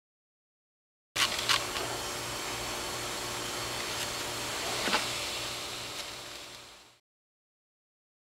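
Steady background hiss with a low pulsing hum and a few sharp clicks, fading out near the end.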